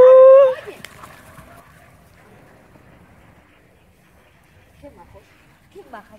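A person's drawn-out, rising call ends about half a second in. Then there is a quiet open-air stretch with a few faint, scattered short sounds near the end.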